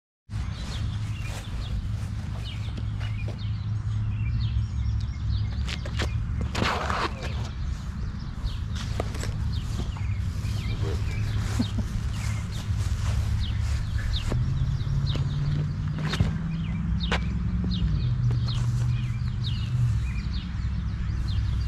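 Outdoor park ambience: birds chirping over a steady low hum. The hum rises in pitch about two-thirds of the way through and drops back near the end.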